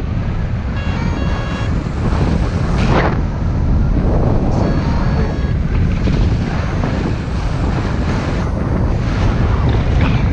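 Airflow buffeting the camera microphone during paraglider flight: a loud, steady, low rushing roar with a stronger gust about three seconds in. Faint short high beeps come through about a second in and again around the middle.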